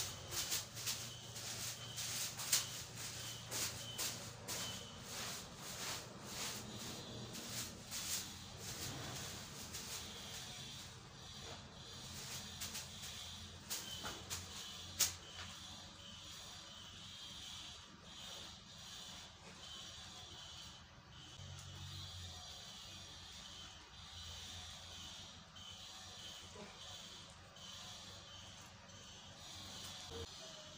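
A bundle of dry grass brushing over a mud cooking stove in rapid, irregular strokes for the first several seconds, then only now and then, with one sharp knock about fifteen seconds in.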